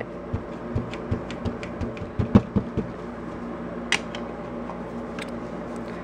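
VersaMark ink pad tapped repeatedly onto a rubber background stamp to ink it: a run of soft, dull taps over the first few seconds, then a couple of sharper single clicks.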